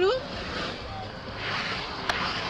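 Steady road and engine noise inside the cabin of a moving Ford Mustang, an even rushing hiss.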